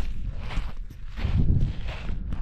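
Footsteps of a hiker in sandals on loose black volcanic sand and fine cinder, a few soft crunching steps while walking uphill.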